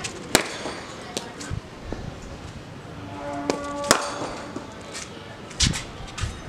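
Cricket bat striking a cricket ball on a sweep shot: one sharp crack just after the start. A short steady tone is heard about three seconds in, then another sharp crack about four seconds in, and a dull thud near the end.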